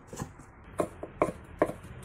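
A kitchen cleaver chopping soaked dried radish and pumpkin into small dice on a wooden chopping block, each stroke a sharp knock on the wood, about one every half second.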